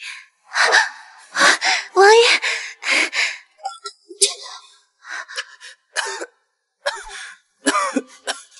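A woman's voice in short bursts without clear words, several in quick succession, the loudest in the first few seconds.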